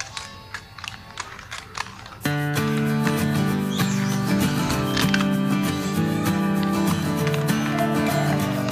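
Background music starting suddenly about two seconds in and running on. Before it, faint clicks and scrapes of a metal spoon stirring thin batter in a plastic bowl.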